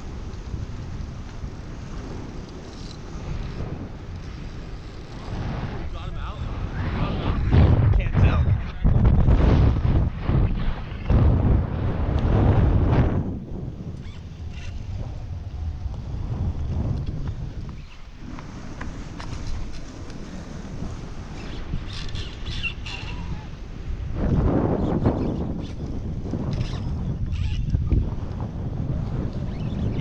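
Wind buffeting the microphone of a body-worn action camera, a rumbling noise that comes in gusts, loudest from about eight to thirteen seconds in and again near the end.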